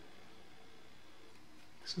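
Steady faint room tone, a low even hiss, in a pause between words; a man's voice starts right at the end.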